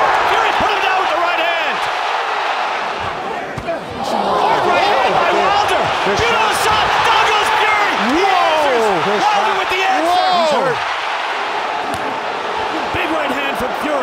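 A large arena crowd roaring and yelling at a heavyweight boxing fight, with sharp thuds of punches landing in among the noise. The shouting swells about two thirds of the way in.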